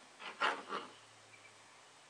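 Three short rubbing, scratchy sounds within the first second, as cotton balls are pushed into a clear plastic turkey-baster tube.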